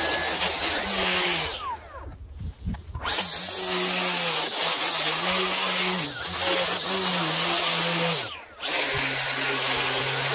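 String trimmer running as its line edges along a concrete curb, the motor's pitch dipping and recovering as it meets the grass. The sound breaks off briefly about two seconds in and again near the end.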